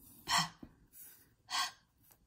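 A woman's voice making two short, breathy speech sounds about a second apart, single word sounds spoken one at a time as a word is sounded out.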